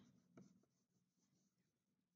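Near silence, with the faint scratch of a wax crayon colouring on paper and one soft tick about half a second in.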